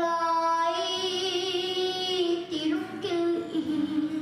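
A young girl singing a long held note for about two seconds, wavering slightly, then moving to a new note about three seconds in.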